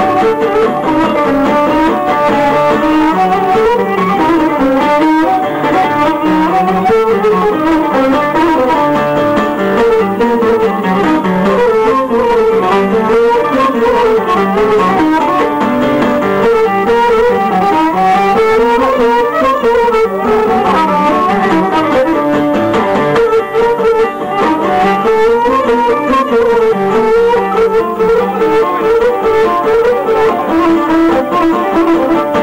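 Live instrumental Cretan music: a Cretan lyra bowing a winding melody over a strummed acoustic guitar.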